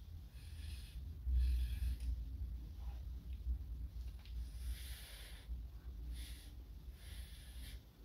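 Short puffs of breath blown through a paper straw onto wet acrylic pour paint, about five soft hissing blows, each under a second long, to push the paint into patterns. A low steady rumble runs underneath.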